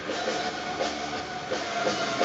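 Live metal band playing an instrumental stretch of the song, with a sustained distorted guitar drone over a driving drum beat and no vocal.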